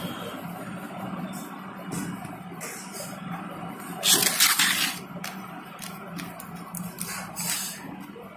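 Clear plastic tray and plastic wrapping being handled, crinkling and rustling with small clicks, loudest in a burst of about a second midway and again briefly near the end, over a steady low hum.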